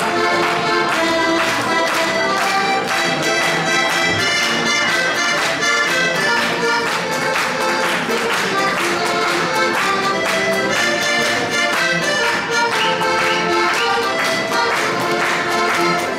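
Heligonka, a Slovak diatonic button accordion, playing a lively traditional folk tune: steady held melody notes over a regular rhythmic pulse of bass and chord presses.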